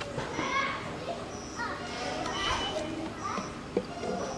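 Several people talking over one another in unclear, overlapping voices, some of them high-pitched, with a short knock near the end.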